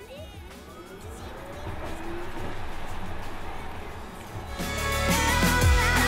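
Tesla Model S P85D's dual electric motors whining and rising in pitch as the car accelerates, with road noise in the cabin. Loud music with a heavy bass comes in about four and a half seconds in.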